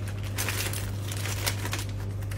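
Plastic food packs crinkling and rustling as they are handled and set down in a wire shopping cart, over a steady low hum from the cold room's evaporator fans.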